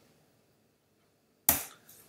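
A single sharp keystroke on a computer keyboard about one and a half seconds in, after a near-silent pause: the Return key pressed to run the typed command.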